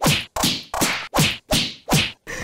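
A quick run of about six whip-crack slap sound effects, roughly three a second, each a sharp swishing crack that stops dead before the next.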